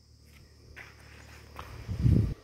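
Faint footsteps on a dirt and gravel road, a few soft scuffs, with a low thump on the microphone near the end.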